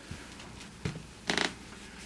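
Handling noise from gloved hands working at the ceiling opening: a couple of light clicks, then one short, louder rustle about a second and a half in.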